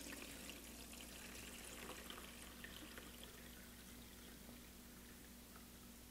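Cold water being poured faintly from a glass carafe into the top reservoir of a BUNN Velocity Brew coffee brewer, a soft trickle that slowly tapers off. The water is going in to flush the hot water out of the brewer's internal tank.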